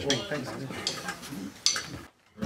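Low voices of a group of men in a small studio room, with a few light clicks; the sharpest click comes near the end.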